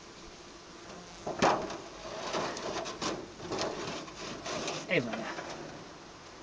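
Sheet-metal control plate scraping and knocking against the wooden runners as it is slid into the slot under a beehive, with the loudest knock about a second and a half in. Bees buzz faintly under it.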